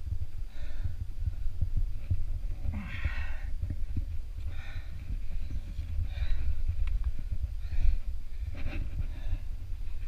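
A rock climber breathing hard while pulling up a steep face, with about six heavy exhalations every second or so, the strongest about three seconds in, over a steady low rumble.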